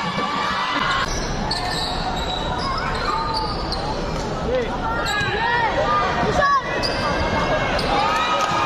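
Basketball game on a hardwood court in a large hall: a ball bouncing and sneakers squeaking, the squeaks busiest in the second half, over voices and shouts from players and spectators.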